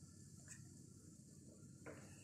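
Near silence: room tone, with a faint tick about half a second in and another short faint sound near the end.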